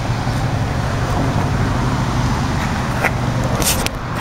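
Steady low rumble of road-vehicle noise, with a few brief clicks near the end.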